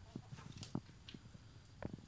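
A chicken giving a few faint, short clucks, mixed with scattered soft clicks.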